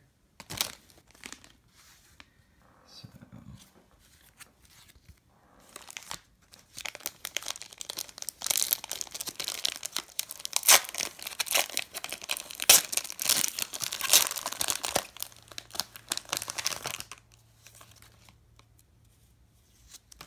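Foil booster-pack wrapper being torn open and crinkled by hand: faint handling at first, then a dense run of sharp crackling and tearing from about six seconds in, lasting about ten seconds before it dies down.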